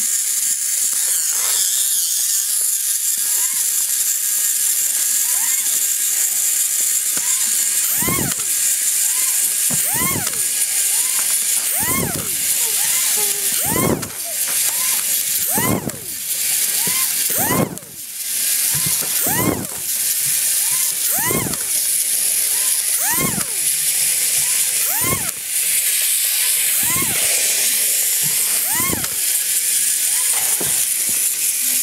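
A small electric toy robot's motor whirs steadily with a high hiss. From about eight seconds in, a smooth falling swoop repeats roughly every two seconds.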